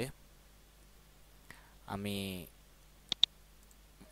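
Two sharp computer mouse-button clicks in quick succession, like a double-click, over a low steady hum.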